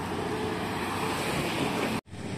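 Road traffic noise: cars driving past on the road, a steady rush of engine and tyre noise that cuts off abruptly at the end.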